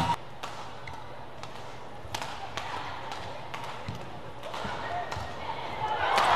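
Badminton rally in an indoor arena: a string of sharp racket-on-shuttlecock hits, about two a second. Crowd noise swells near the end.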